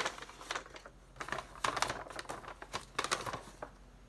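Parchment-style paper rustling and crackling irregularly as a sheet is lifted out and unfolded, dying away near the end.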